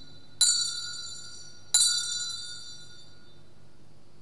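Altar bells (sanctus bells) rung at the elevation of the consecrated host. There are two bright, high-pitched rings, the first just under half a second in and the second near the two-second mark, each fading over about a second.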